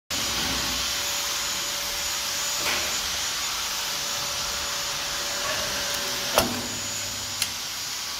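Semi-automatic wire folding labeling machine running with a steady hiss and a faint steady whine. Three sharp mechanical clicks break through, the loudest a little over six seconds in, as the machine folds an adhesive flag label onto a cable.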